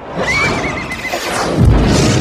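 A horse whinnying: a high, wavering call that fades after about a second, over a loud rushing noise. A deep boom hits near the end.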